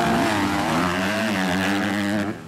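Several motocross bike engines revving as they race, their pitch rising and falling with the throttle.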